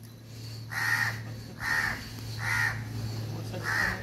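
A crow cawing four times, short harsh calls about a second apart, over a steady low hum.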